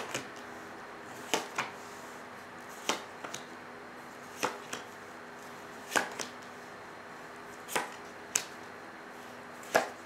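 Tarot cards being laid down one at a time on a table: a sharp card snap about every second and a half, often followed by a softer second tap.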